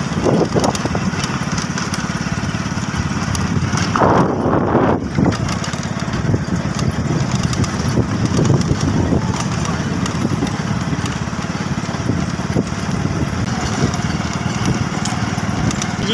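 Small motorcycle engine running steadily while riding along a dirt road, with wind noise on the microphone and a louder gust about four seconds in.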